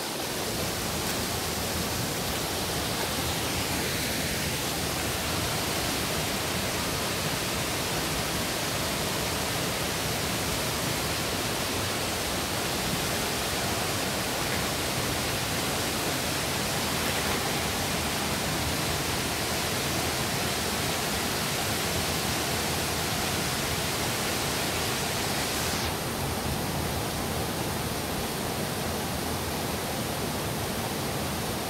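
Waterfall pouring steadily: a constant, even rush of falling water with no breaks.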